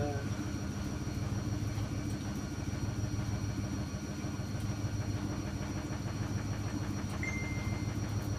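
Zanussi EW800 front-loading washing machine running: a steady low hum with a fast, even mechanical rattle. A faint high steady tone comes in near the end.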